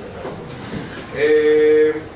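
A man's voice holding a steady, drawn-out hesitation sound ("eeeh") for just under a second, starting about a second in.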